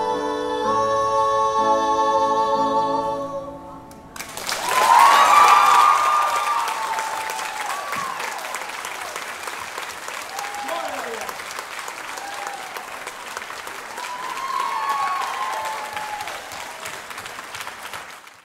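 A male and a female voice hold the duet's final sung note over electric keyboard chords, fading out. About four seconds in, an audience breaks into loud applause with cheers and whoops, which goes on and slowly tapers off.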